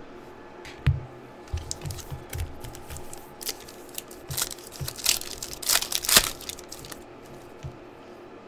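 A foil trading-card pack torn open and crinkled by hand: a few soft handling knocks, then a run of crackling rips through the middle, the loudest a little past halfway.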